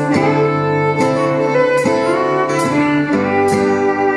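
Live band playing an instrumental passage with no singing: electric guitars, bass, drums and fiddle, recorded on a camera's built-in microphone.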